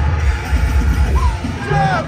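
Deathcore band playing live over a PA, with distorted guitars, bass and drums and a loud steady low end. A high melodic line slides down in pitch near the end.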